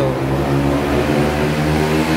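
A motor vehicle engine running steadily and loudly, a low hum with a haze of noise over it.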